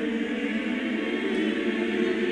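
A choir holding one sustained chord without change: a short choral music sting.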